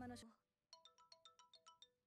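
Faint smartphone ringtone for an incoming call: a quick run of short electronic beeping notes at several pitches, starting about two-thirds of a second in.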